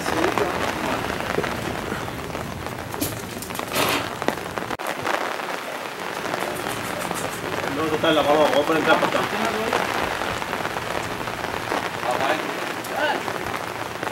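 Steady rain pattering on an umbrella close to the microphone, with a few sharper drop taps about three to four seconds in.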